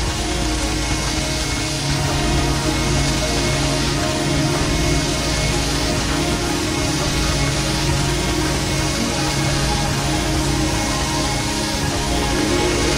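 Experimental electronic music: a dense, steady drone of many sustained tones over a noise haze, swelling slightly about two seconds in.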